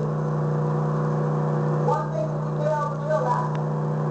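A woman speaking into a microphone, muffled and unclear, from about two seconds in, over a steady low hum.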